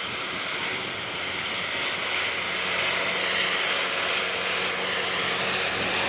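Tractor's engine and side-mounted grass mower running while mowing, a steady drone that grows slightly louder.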